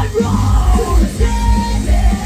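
Loud live rock-style idol pop song over the venue PA: female voices singing and shouting into microphones over a heavy, pulsing bass and drum beat.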